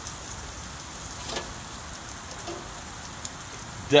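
Chicken sizzling steadily on a hot gas grill, with a light click of metal tongs about a second and a half in.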